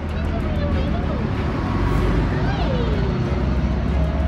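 Steady rumble of road traffic passing close by, with a person's soft, drawn-out calls rising and falling in pitch, the longest about halfway through.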